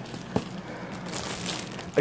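Clear plastic packaging bag crinkling and rustling as it is handled, with a single sharp knock about a third of a second in.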